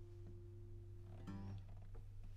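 The last acoustic guitar chord of a song ringing out and fading away, then a brief soft sound about a second and a half in. A low steady hum sits underneath.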